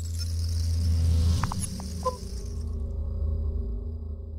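Sound-designed intro logo sting: a deep bass swell with an airy whoosh on top, peaking about a second in, a few short bright tones around a second and a half to two seconds in, then a low drone that slowly fades.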